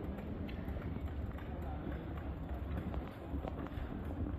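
Footsteps on the hard, polished floor of an airport terminal hall: a few light, irregular clicks over a steady low hum of the large hall.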